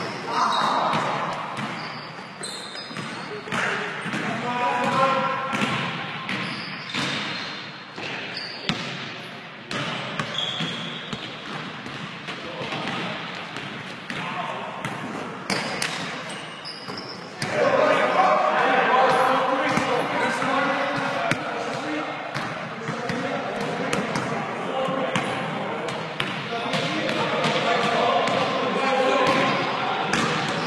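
Basketball bouncing on a hardwood gym floor during a pickup game, with the players' indistinct calls and talk mixed in; the voices get louder about halfway through.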